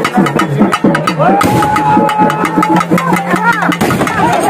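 Drums beating a fast, steady rhythm, several strokes a second, with a long held note sounding over them from just over a second in until near the end. A crowd's voices sit underneath.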